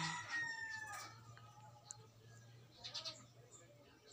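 A drawn-out animal call trails off with a falling pitch in the first second, followed by a faint steady low hum with a few brief faint chirps.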